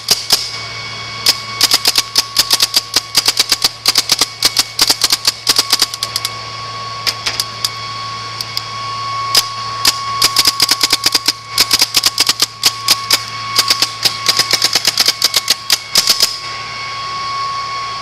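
Spyder E99 paintball marker firing on CO2: strings of sharp semi-automatic shots, several a second, broken by brief pauses. A steady hum runs underneath.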